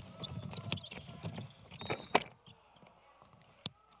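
Basketball game sounds in an empty arena: a ball dribbled on a hardwood court and sneakers squeaking, with a sharp knock about two seconds in. The second half is quieter, with one more knock near the end.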